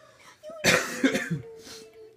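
A person coughing: two or three quick, harsh coughs just over half a second in.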